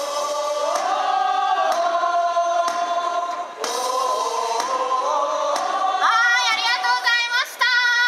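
Baseball cheering song sung in chorus by fans to a live keyboard accompaniment, with a drum struck about once a second.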